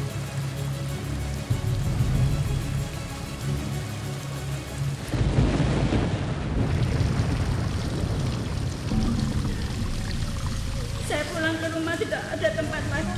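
Background music with a heavy low bass line. About five seconds in, a loud rush of rain and thunder sound effects comes in and fades over a couple of seconds. A voice enters near the end.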